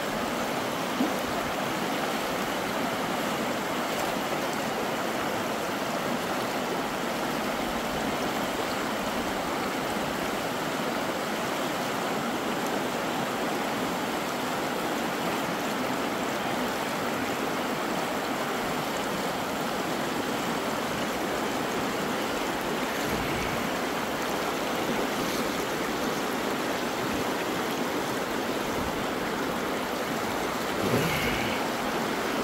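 Shallow, fast-flowing river rushing over rocks in rapids: a steady, unbroken rush of water, with one brief knock about a second in.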